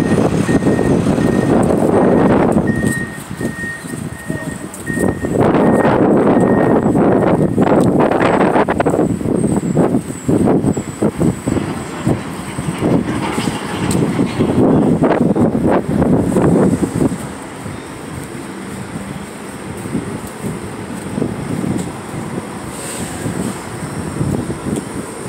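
City street traffic: vehicles passing close by, loudest in the first nine seconds and again around the middle, then quieter. An evenly repeating high beep sounds through the first seven seconds or so.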